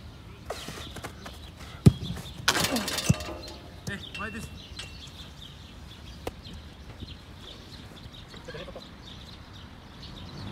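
A football struck hard, giving one sharp, loud thud about two seconds in. About half a second later a short noisy burst follows, ending in a second thud as the ball is met at the goal. Faint bird chirps sound in the background.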